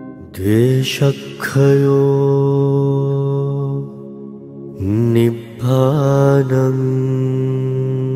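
A man's voice chanting two drawn-out phrases, each gliding up into a long held note.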